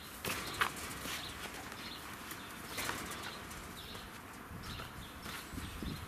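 Cheetah cub scuffling on dirt and batting a stuffed toy: soft rustles, scrapes and light thumps, with faint high chirps now and then.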